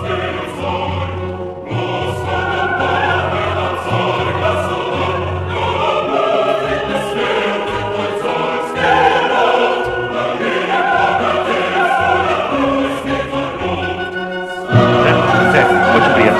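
Ceremonial orchestral music with a choir singing, sustained and stately; it swells louder near the end.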